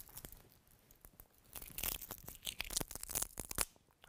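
A fibrous Trachycarpus palm leaf strip being pulled and split by hand, giving a faint run of small irregular crackles from the strained fibres, starting about a third of the way in.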